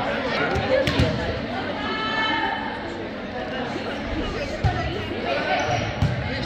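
Echoing gymnasium chatter of players and spectators, with a few sharp thuds of a volleyball on the hardwood court, two close together about a second in and another near five seconds.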